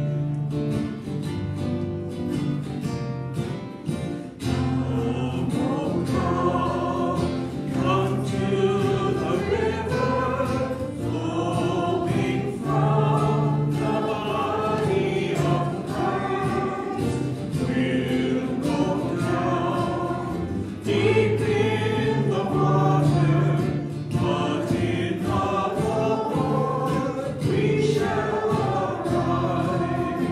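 Opening hymn: voices singing to a strummed acoustic guitar. The guitar plays alone at first, and the singing comes in about four seconds in.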